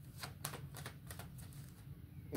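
Tarot cards being shuffled by hand: a quiet, irregular run of light card clicks, a few a second, that stops shortly before the end.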